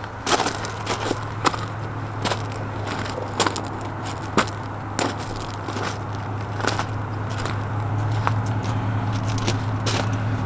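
Footsteps crunching on gravel and wooden wheel chocks being handled and set down: a string of irregular sharp crunches and knocks, about one every half second to second. Under them runs a steady low hum that grows a little louder toward the end.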